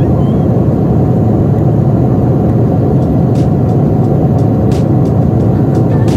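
Jet airliner cabin noise in flight, heard from a window seat by the wing: a loud, steady low rush that does not let up.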